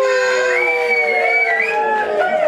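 Several young women's voices together, holding one long drawn-out note at slightly different pitches, ending a group greeting as they bow.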